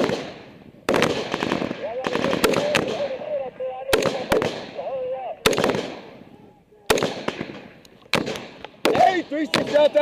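Rifle gunfire in a firefight: about a dozen sharp shots, fired singly and in quick pairs at uneven intervals, each echoing away across open ground. Men's voices call out between the shots.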